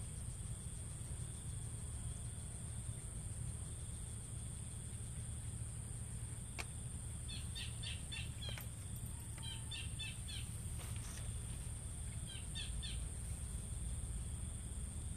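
A steady high-pitched insect drone, like crickets, runs under a low rumble. Short bursts of bird chirps come three times in the second half, with a single click just before the first.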